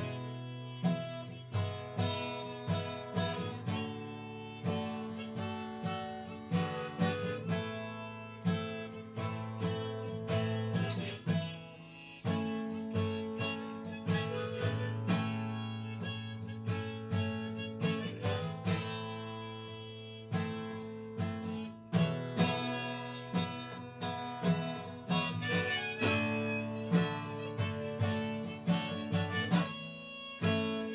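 Harmonica in a neck rack playing long held notes over a steadily strummed acoustic guitar, both played by one person.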